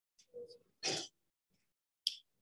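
A person clearing their throat: a brief soft sound, then a short, harsher rasp about a second in.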